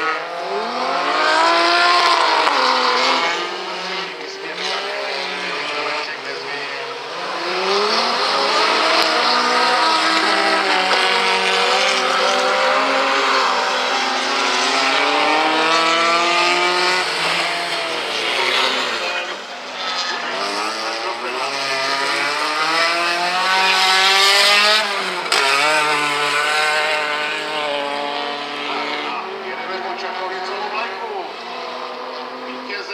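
Several rallycross cars' engines revving hard on a dirt track, their pitch climbing and falling again and again with throttle and gear changes, the sounds of more than one car overlapping.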